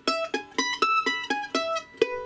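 Ellis F-style mandolin played with a pick: a quick run of about ten single notes, roughly five a second, each picked sharply and left to ring briefly. They are the tones of an E major chord (E, G sharp, B) picked one at a time.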